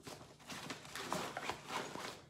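Nylon pouches and bag fabric being handled: a quick run of soft rustles and light knocks as a loaded first aid pouch is pressed into place on the side of a tactical bag.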